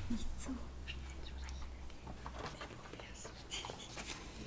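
Faint whispering and low voices in a small room, with a low hum for the first two seconds and a few light clicks.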